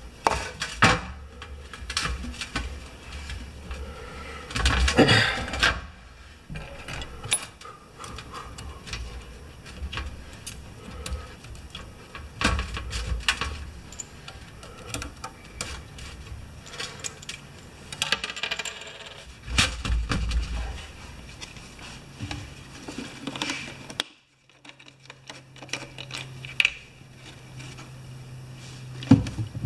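Small metal pressure-pump parts clinking and being set down against a metal pan and workbench, with scattered sharp clicks and handling knocks, the loudest about five seconds in and again about twenty seconds in. A few seconds before the end the clinking stops abruptly and a steady low hum is left.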